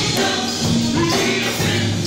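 Live gospel music: several singers on microphones over keyboard and band accompaniment, loud and steady.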